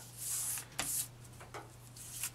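Hands rubbing and pressing soft plasticine clay onto a corrugated cardboard disc: two soft rubbing strokes in the first second, then quieter handling.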